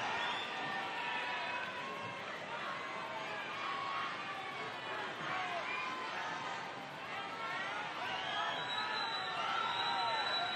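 Spectator crowd in the stands: many overlapping voices chattering, with scattered shouts and cheers, steady throughout.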